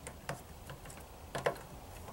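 A few light plastic clicks and taps as a 3D-printed knob is pushed and worked onto the control-knob shaft of a 3D printer's display panel, the loudest about a second and a half in.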